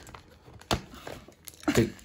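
Shiny wrapping paper rustling as fingers pick at the sticky tape on a wrapped present, with one sharp tick a little under a second in. A man starts speaking near the end.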